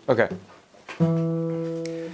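Acoustic guitar with a capo: one chord struck about a second in, left to ring and slowly fading.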